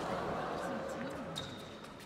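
Tennis ball struck by rackets and bouncing on the court during a rally, a few sharp hits over crowd chatter.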